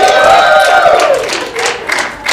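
Comedy-club audience clapping and cheering, with one voice holding a high whoop for about a second before it falls away.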